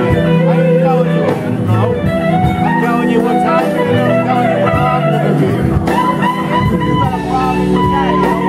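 Live blues band playing a slow blues, with an electric guitar lead line of bent, gliding notes over bass, drums and keyboard.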